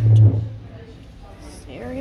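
Indistinct voices of people talking. A brief loud low hum or rumble sounds at the start and fades after about half a second.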